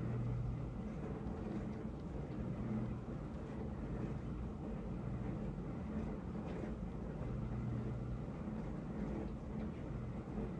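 A steady low hum with an even background hiss, with no distinct events standing out.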